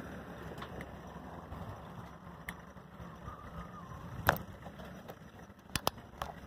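Steady low rumble of wheels and wind while riding along a paved road, broken by a few sharp clicks. The loudest comes about four seconds in and two come close together near the end.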